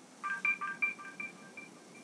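A short chime sound effect: a quick run of high, bell-like electronic notes, about six a second, fading out over a second and a half.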